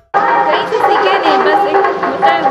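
People talking, indistinct chatter, starting suddenly after a brief silence.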